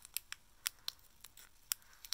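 A small plastic packet crinkling between the fingers as white slime powder is shaken out of it: a string of faint, sharp, irregular crackles.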